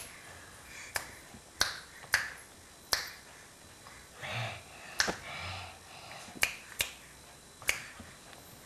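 Finger snaps: about eight sharp single clicks at uneven intervals, with a couple of soft breathy sounds between them near the middle.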